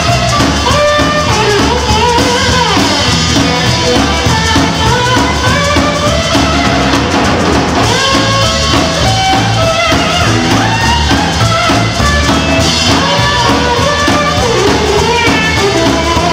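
Live band playing loudly: a Telecaster-style electric guitar playing a line of short notes and bends over a drum kit and bass.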